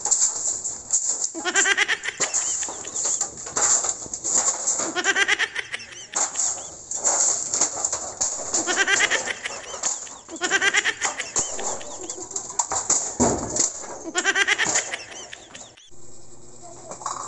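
Stiff-bristled stick broom sweeping bare dirt ground in quick, repeated scraping strokes. A wavering pitched call recurs every few seconds.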